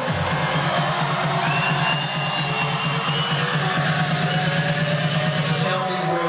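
Electronic dance music played loud over a nightclub sound system, with a fast pulsing bass line and a high synth note held for about two seconds in the middle.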